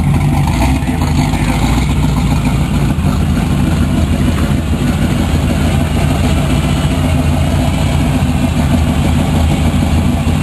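Hot-rod three-window coupe's engine running steadily at low revs as the car rolls slowly past close by, exhaust loud. The note sounds supercharged.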